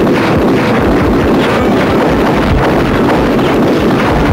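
A truck's engine running, a loud steady rumble.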